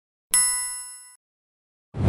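A notification-bell 'ding' sound effect: one bright, metallic chime that strikes about a third of a second in and rings away within a second. Right at the end a short whoosh of noise begins.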